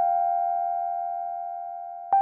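Two sustained electronic chime notes, close in pitch, ringing on and slowly fading, part of a short transition jingle.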